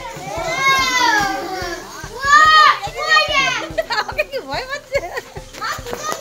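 Several high-pitched, excited voices calling out in bursts, their pitch sweeping up and down. No sound other than voices stands out.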